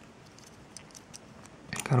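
Faint, scattered small clicks and taps of a plastic LEGO minifigure and its accessories being handled in the fingers.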